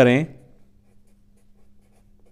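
Marker pen writing on paper: a few short, faint scratching strokes as numbers are written, over a faint steady hum.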